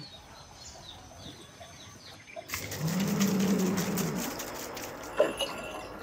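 Faint bird chirps over quiet ambience, then a water buffalo lows once, a low drawn-out call of about two seconds, over a louder rushing noise. A single knock comes near the end.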